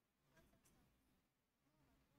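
Near silence: faint room tone with a couple of very faint ticks about half a second in.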